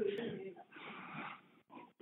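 A man's faint, breathy exhale in a pause between words, trailing off over about a second and a half, with a brief soft breath near the end.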